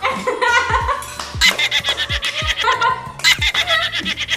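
A woman laughing in quick repeated bursts, over background music with a steady beat.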